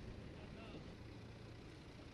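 Low, steady rumble of a heavy diesel machine's engine running, with faint voices over it about half a second in.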